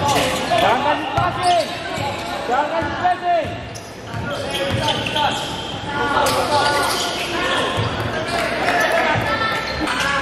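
Live game sound from an indoor basketball court: the ball bouncing on the hardwood floor, with players and spectators calling out, all echoing in a large gym hall.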